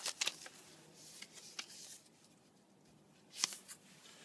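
Trading cards being handled and flipped through: a few faint, separate card flicks and rustles, the loudest shortly before the end.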